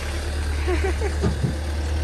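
Ford Transit van driving slowly past close by, its engine running with a steady low rumble.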